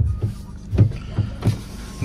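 A car's electric window motor running as the side glass winds down, under a steady low hum with several short low thumps.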